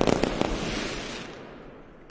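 Mascletà firecrackers going off: a few sharp bangs in the first half second over a dense crackle, which thins and fades away during the second half.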